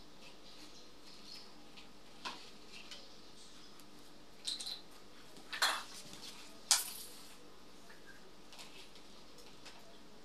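Mikado fabric being handled and marked on a table: faint rustling with a few short, sharp sounds, the two loudest about five and a half and six and a half seconds in.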